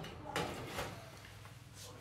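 A baking tray pushed into an oven along its rails: a short scraping knock about a third of a second in, fading away.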